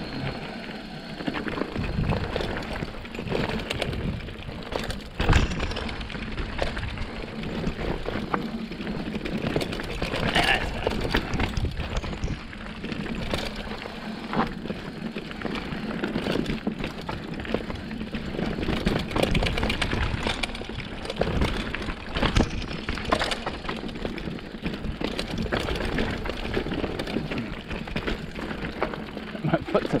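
Mountain bike riding over a dirt forest singletrack: continuous tyre and trail noise with frequent knocks and rattles from the bike.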